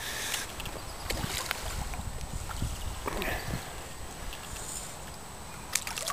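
A hooked carp splashing at the surface of the lake water as it is played in close, with a few sharp splashes near the end over a steady low rumble.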